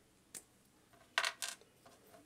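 Small plastic action-figure parts clicking together as they are handled: three short, sharp clicks, one about a third of a second in and two just over a second in.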